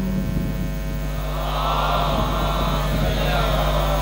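Steady electrical mains hum from a public-address system, with a wash of higher noise swelling about a second in and fading near the end.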